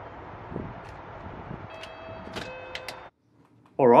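Video door intercom panel being called: after its button is pressed, it gives a steady electronic ring tone made of several notes, lasting about a second, with a few sharp clicks, over street background noise.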